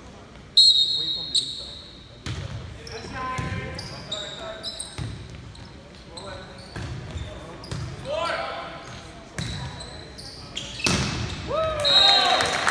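Referee's whistle blown once about half a second in, then a volleyball rally on a hardwood gym floor: the ball struck several times and sneakers squeaking, with another whistle right at the end.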